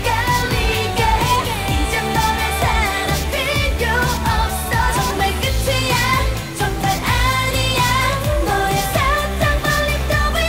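K-pop song performed by a female vocal group: women's voices singing a melody over a pop backing track with a steady beat and deep bass.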